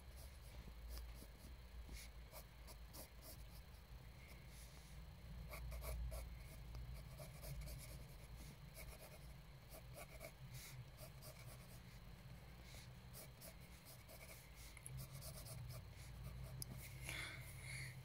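Faint scratching of drawing strokes on paper, many short strokes one after another, over a low steady hum.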